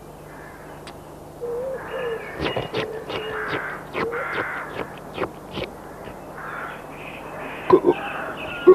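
Bird calls: a run of short, harsh, crow-like calls from about two to six seconds in, over held tones.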